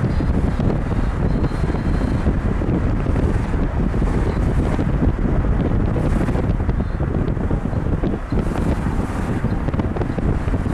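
Wind buffeting the microphone over the steady low rumble of a car driving along a street, heard from inside the car.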